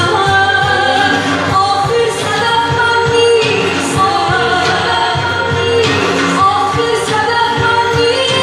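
Stage-show music playing throughout: singing held over a steady beat.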